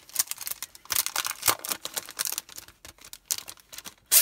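Clear plastic packaging of a set of Thinlits dies being opened and handled: a quick, irregular run of crinkles and sharp clicks.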